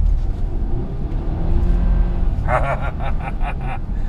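Mercedes-Benz E-Class sedan heard from inside the cabin: a steady low engine and road rumble with a slight rise in engine pitch over the first two seconds as the car pulls away on ice. A man laughs briefly about two and a half seconds in.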